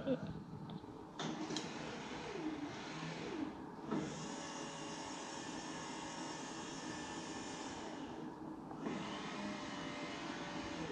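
Electric steering actuator of a large 1:2.5-scale MAZ-537 model, its motor whining as the radio control turns the front wheels. The whine starts about a second in and breaks off briefly twice.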